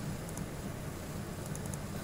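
Steady low hum and hiss of background room noise, with a few faint, short clicks from a computer mouse.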